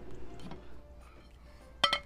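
A single sharp clink of a plate against a cast iron skillet, ringing briefly, near the end, as the pan is readied to flip the cake out.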